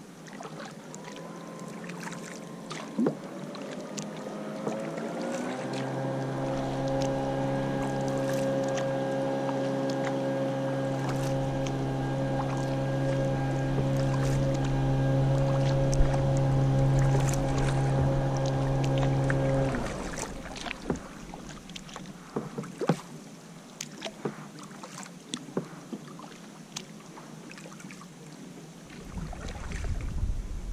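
Kayak paddle strokes splashing and dripping on lake water. Under them a steady, machine-like pitched drone rises in pitch as it comes in over the first few seconds, holds level, and cuts off suddenly about twenty seconds in.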